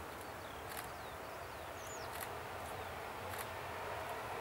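Boeing 737-400's CFM56 jet engines idling as it taxis, heard faintly as a steady hiss with a thin whine, growing slightly louder toward the end. Small birds chirp briefly a few times over it.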